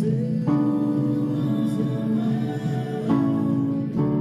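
Yamaha digital piano playing sustained two-handed chords, changing to a new chord about half a second in and again about three seconds in.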